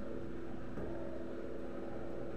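An electric fan motor running with a steady hum and rush of air.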